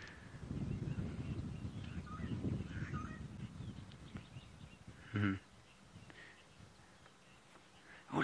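Quiet outdoor bush ambience: a low rumble over the first few seconds with a few faint bird chirps, and one short voiced sound about five seconds in.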